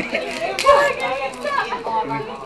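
Several people talking at once in the background, with a louder burst of voice just over half a second in.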